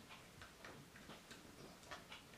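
Near silence with a few faint clicks from the joints and parts of a small plastic Transformers figure being handled and posed.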